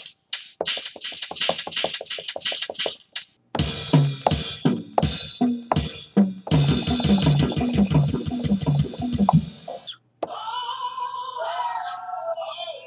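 Drum samples triggered from an Akai MPC's pads. For the first few seconds a shaker sample plays in quick repeated hits; then, about three and a half seconds in, a fuller drum pattern with bass notes begins. A pitched sound with bending tones follows near the end.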